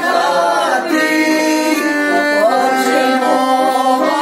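A small group of voices singing a Ukrainian New Year carol (shchedrivka) together in long held notes, accompanied by a button accordion.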